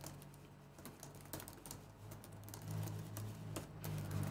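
Faint light scratching and ticking of a stencil brush swirling paint over a plastic stencil on a wooden board, many small irregular clicks, over a low steady hum.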